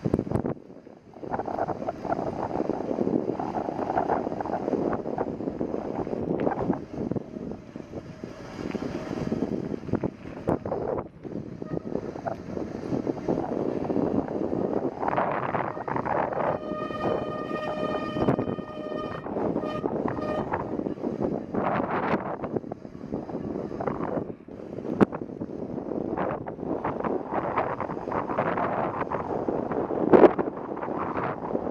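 Wind on the microphone and bicycle tyres rolling on asphalt down a steep street. A bit past halfway a steady, high squeal with several overtones sounds for about three seconds, typical of bicycle brakes squealing while braking on the descent.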